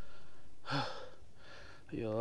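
A man breathing hard from the effort of climbing a steep trail: one loud, gasping breath with a brief catch of voice about two-thirds of a second in, then a fainter breath out.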